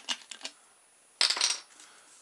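Plastic bottle caps clattering down onto a wooden tabletop: a few light clicks, then a short, sharp rattle about a second in.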